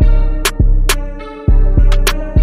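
Detroit-style trap instrumental beat in G minor at 102 BPM: deep 808-style bass notes, sharp percussion hits in an uneven bouncing pattern, and a pitched melodic loop. The bass fades out and drops back in sharply about one and a half seconds in.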